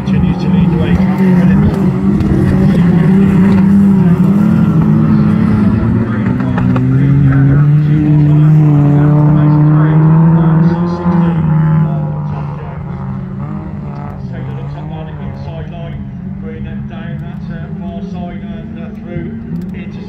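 Stock hatchback autograss race cars running on the dirt track, an engine note climbing in pitch about six seconds in as a car accelerates. It stays loud until about twelve seconds in, then drops to a quieter, steadier engine sound as the cars move away.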